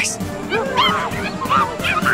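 A string of short, high, rising-and-falling animal-like yelping cries over background score music.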